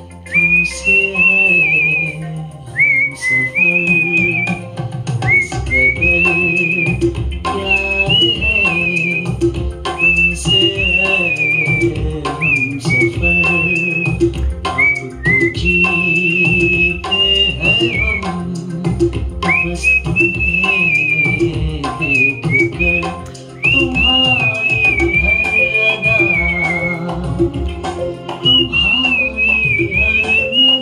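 A person whistling the melody of a Hindi pop song in phrases, sliding up into each phrase, over an instrumental backing track with a steady beat.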